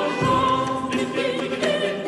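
Early Spanish music of the 15th–16th centuries: a vocal ensemble singing held chords.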